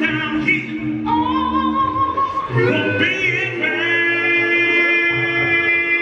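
Male a cappella gospel group singing in close harmony into microphones in a large hall. A high lead voice holds a note with vibrato about a second in, and from a little past halfway the group sustains a long held chord.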